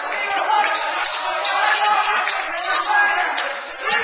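Sports-hall game noise: overlapping voices from players and spectators, with short squeaks and an occasional knock from play on the court floor.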